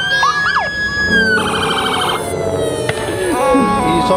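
Several police car sirens sounding over one another, wailing and yelping in overlapping sweeps, with a rapid warbling burst about a second and a half in.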